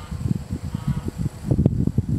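Wind buffeting the microphone in uneven gusts, a loud low rumble, with one short click over a second in.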